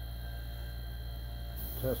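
A steady low hum throughout; near the end an airbrush starts spraying, a thin high hiss of air, as fresh colour is tested on a scrap piece.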